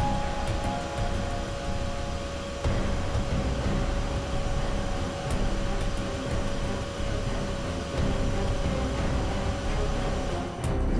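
Suspenseful background score: a low rumbling drone with one held tone.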